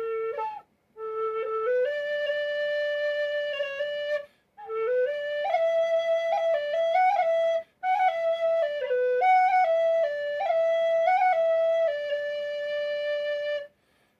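Penny whistle in A playing a short melodic lick in the key of D: a brief note, then three phrases separated by short breaths, ending on a long held D.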